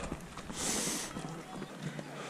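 Runners' footsteps on a gravel path, quiet, with a short rush of hiss about half a second in.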